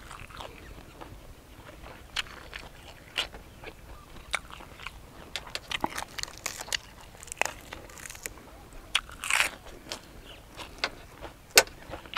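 A man chewing a mouthful of grilled field rat close to the microphone, with frequent irregular crunches and wet mouth clicks, and a longer crunch about nine seconds in.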